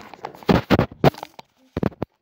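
Handling noise from a phone being moved about: a few loud bumps and rubs around the middle and one more near the end, after which the sound cuts off abruptly.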